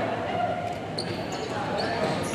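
Indoor futsal play in a large, echoing hall: voices of players and onlookers mixed with knocks of the ball on the court, and short high squeaks of shoes about a second in.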